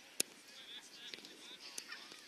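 A single sharp thud of an Australian rules football being kicked, with distant shouting calls from players.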